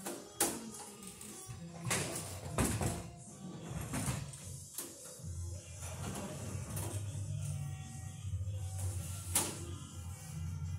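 Music playing in the background, with a steady low bass line. Over it come several sharp clicks and knocks as a sheet-metal LED light fixture is handled, the loudest about half a second in and near the end.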